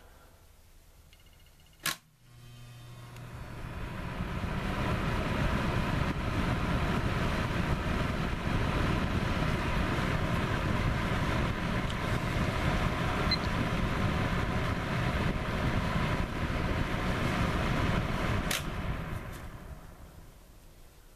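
Patton HF-50 electric fan heater switched on at high with a click: its fan motor spins up over a few seconds into a steady rush of air with a low hum. About eighteen seconds in, a second click switches it off and the fan winds down.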